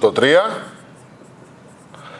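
A man's voice says a couple of words, then a marker pen writes on a whiteboard, faint strokes on the board's surface.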